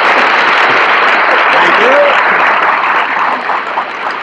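Live studio audience applauding on an old radio broadcast recording, with a few voices mixed in. The applause holds steady, then begins to die away near the end.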